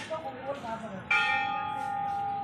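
A temple bell struck once about a second in, then ringing on with a clear, steady tone that slowly fades.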